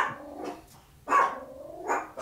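A dog barking: one short bark about a second in, then a rising call near the end.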